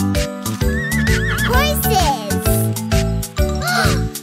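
A horse whinny sound effect over a children's song with a steady beat: one long wavering neigh that falls away in pitch, then a shorter one near the end.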